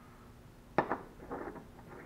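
Steel parts of a lowrider hydraulic dump valve clinking together as the shaft and seal piece are fitted back into the valve body: one sharp metal click about a second in, then a few fainter clinks.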